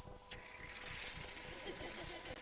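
Seltzer bottle uncapped quickly: a faint hiss of carbon dioxide escaping starts about a third of a second in, and the water fizzes and foams over as the sudden pressure drop brings the dissolved gas out as bubbles.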